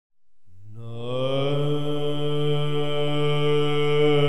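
Byzantine chant opening on a sustained vocal drone (the ison), fading in about half a second in and held steady on one low note.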